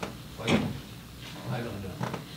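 A short, sharp bump or knock about half a second in, followed by faint voice sounds, such as a murmur or breath near a handheld microphone.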